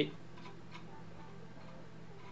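A few faint ticks from a computer mouse's scroll wheel over a low, steady electrical hum.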